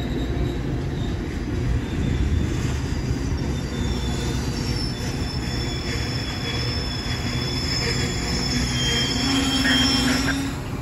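Metra bilevel commuter train rolling slowly into the station as it brakes to a stop: a steady low rumble of wheels on rail, with thin high squeals joining from about three seconds in.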